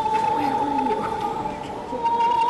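Free jazz improvisation: a single high note held steady, with lower sliding tones that bend downward about a second in.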